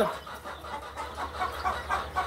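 Young chicks peeping in the background, many short high calls, over a low steady hum.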